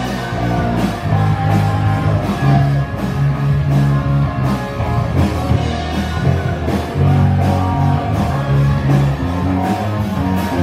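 Live rock band playing: electric guitar, bass guitar and drum kit, amplified through a PA, with a steady beat.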